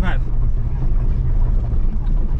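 Steady low rumble of a car driving slowly on a rough dirt road: engine and tyres on gravel, heard from the car itself. A voice cuts in briefly at the start.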